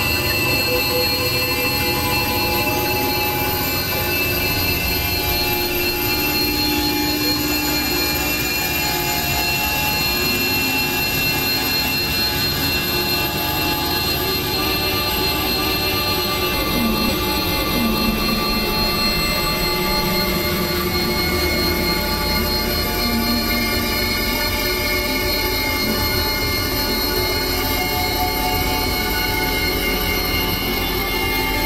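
Dense experimental electronic drone: many sustained synthesizer tones layered over a steady, noisy, squealing wash at an even level, with a few short wavering low tones in the middle.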